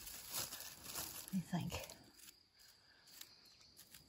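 Rustling of leaves and dry grass as cut branches of a small cork oak are handled during pruning, dying away about halfway through.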